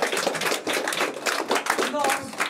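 A small audience clapping after a song ends, with a few voices mixed in.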